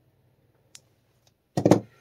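A couple of faint snips of metal scissors trimming EVA foam, then a short, loud clatter as the scissors are set down on the table near the end.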